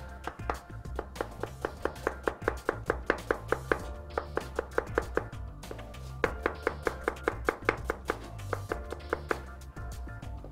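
Kitchen knife slicing small red onions on a plastic cutting board: quick, even knife strikes against the board, about six a second, in three runs with brief pauses about four and six seconds in.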